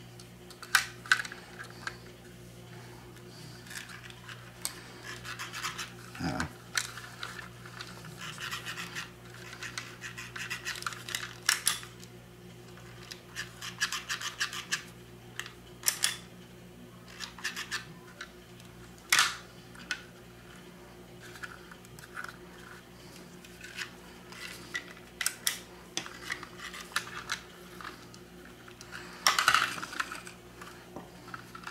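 Small plastic HO slot-car chassis being pushed and rubbed against a plastic track section: irregular scratching and scraping with sharp clicks, loudest about 19 s in and near the end. A steady low hum runs underneath.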